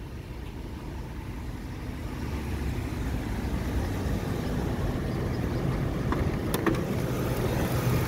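Mitsubishi Raider's 4.7-litre V8 idling steadily, growing gradually louder, with a couple of faint clicks about six seconds in.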